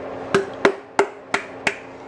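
Five sharp knocks from an upside-down glass Prego pasta sauce jar being shaken and knocked to get the sauce out, about three a second.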